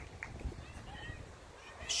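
A pause in a man's speech, leaving faint outdoor background noise with a low rumble and a couple of faint ticks near the start.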